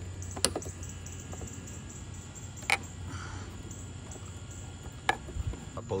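Screwdriver working small metal fairing screws out: three sharp metallic clicks about two seconds apart, over a low steady hum.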